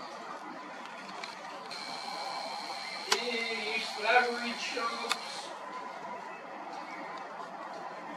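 Video camera's zoom motor whirring for about three and a half seconds as the lens zooms in, a steady high whine with hiss, with faint voices in the background.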